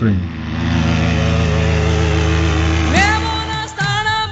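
Paramotor trike's engine and propeller running steadily, a constant drone. Near the end a sung note from background music rises in over it.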